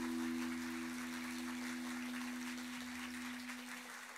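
Audience applauding while the acoustic guitar's last chord rings on and dies away near the end.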